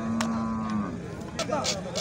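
A young cow giving one long, steady moo that ends just under a second in, while its horn is being cut off with a hammer and chisel; a sharp knock of the hammer sounds near the start.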